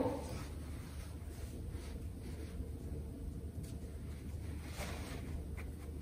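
Faint rustling of a fabric head wrap being twisted and wound around a bun, over a steady low hum.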